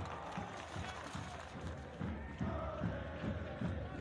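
Soccer stadium crowd noise from a match broadcast in a pause in the commentary: a steady murmur of many voices, with faint calls or chanting rising from it in the second half.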